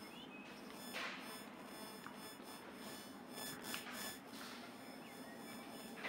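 Quiet outdoor city ambience on an evening walk: a steady low hum of distant traffic, with a few soft swishes of passing noise and faint high chirps.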